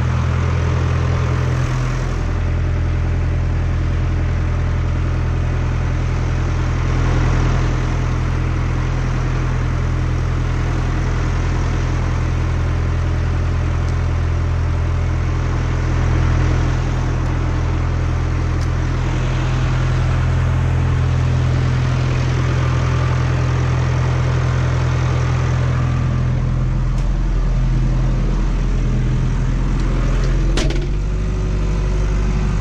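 Case IH 4230 tractor's diesel engine idling steadily.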